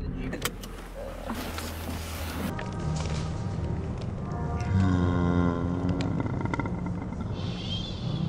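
Steady low hum of a car interior for the first couple of seconds, then, after a cut, background music with held pitched notes.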